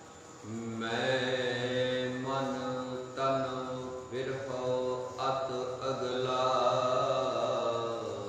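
A man's voice chanting a sacred text in held, fairly level notes, in about four long phrases that start about half a second in and fade out near the end.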